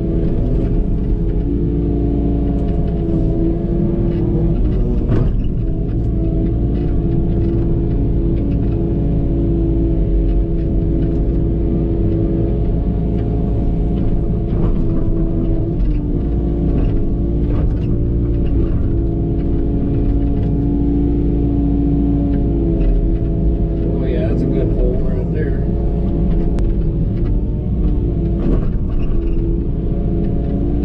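Excavator's diesel engine and hydraulics running steadily under digging load, heard from inside the cab, a constant deep drone with a steady hum over it. Occasional short knocks come from the bucket working through brush and dirt.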